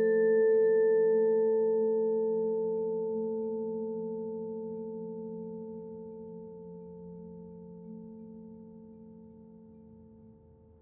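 A bowed metal percussion note ringing out: one sustained pitch with overtones swells up at the start and then fades slowly over about ten seconds, over a lower steady tone.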